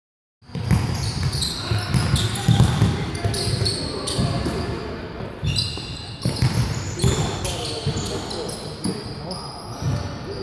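A basketball being dribbled on a hardwood gym floor: repeated low thuds, thickest in the first three seconds, with players' voices in between.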